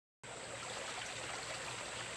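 Steady, even outdoor background hiss with no distinct events, beginning a moment in.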